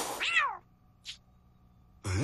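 Cartoon cat's short meow-like vocal near the start, its pitch arching up and then sliding down.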